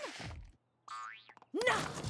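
Cartoon sound effect: a single quick rising whistle-like glide, about half a second long, as studio lights swing into place.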